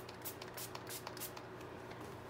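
Faint, scattered small ticks and light rustling from hands handling a small spray bottle, with a faint steady hum beneath.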